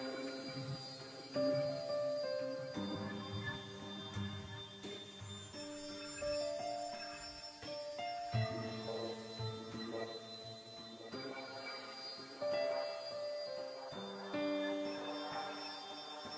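Background film score: slow, sustained keyboard-like notes that shift to a new chord every second or two.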